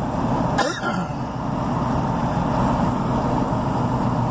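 Steady engine and road noise inside the cab of a moving Ram pickup truck, with one short cough-like throat sound about half a second in.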